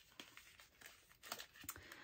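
Near silence with a few faint rustles and small clicks, from photo-card packaging being handled.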